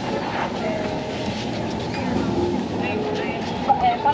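Busy sidewalk ambience: the voices of passers-by over a steady hum of street noise, with no single sound standing out.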